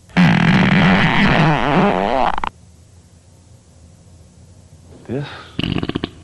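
Fart sound effect: one long, loud fart of about two seconds, its pitch wobbling up and down, starting and cutting off abruptly.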